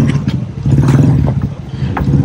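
Motorbike engine running with a low, steady drone and some clatter.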